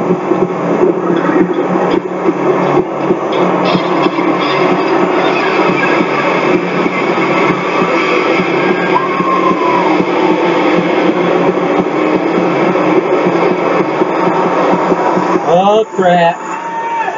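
Wrestling broadcast audio playing: music and voices over a loud, steady, dense din, as from an arena crowd.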